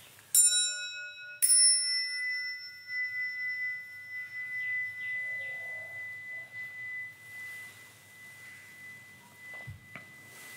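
An altar bell is struck twice about a second apart at the elevation of the chalice. The second strike rings on and fades slowly over several seconds.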